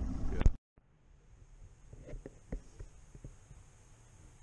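A voice over the boat's running noise for the first half-second, cut off suddenly, then quiet with a faint steady hiss and a few faint scattered taps and knocks about two to three seconds in.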